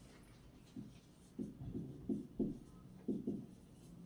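Dry-erase marker writing on a whiteboard: a quick series of short strokes, starting about a second in.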